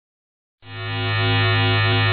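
Steady electric buzz on a low hum, fading in about half a second in after silence: a synthetic sound effect for a static-glitch logo intro.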